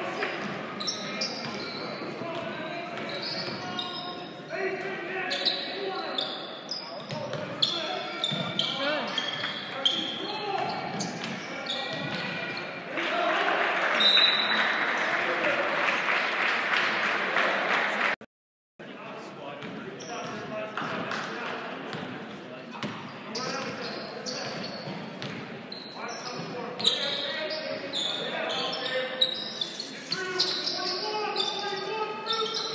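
Basketball game in a gym: a ball dribbling on the hardwood court amid the voices of players and spectators, with the noise swelling louder in the middle. The sound cuts out completely for a moment about eighteen seconds in.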